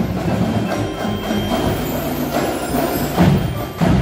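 Winter percussion ensemble playing live: marimbas and other mallet keyboards over the drumline's drums, with two loud accented hits near the end.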